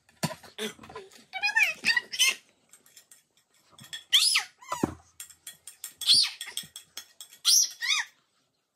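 A pet's short, high-pitched whines that fall in pitch, three of them in the second half. Between them come clicks and scrapes of a spoon on a plate as rice is scraped off.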